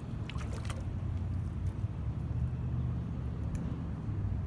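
Pool water sloshing and splashing faintly around someone standing in it, a few small splashes in the first second, over a steady low rumble.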